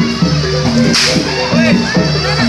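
A single sharp crack of a jaranan dancer's whip (pecut) about a second in, over loud jaranan ensemble music.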